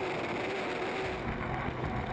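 Onboard sound of a turbine-powered unlimited hydroplane at race speed: a steady engine note under a rush of wind and water spray on the microphone. The low rumble grows louder about halfway through.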